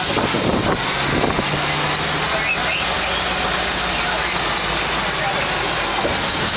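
Open-sided safari truck driving, its engine running steadily under rough, crackling road and wind noise.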